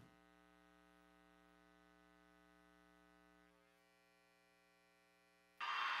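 Near silence as the routine music ends, with only a faint held tone lingering. Near the end a louder, steady, hissing noise starts abruptly.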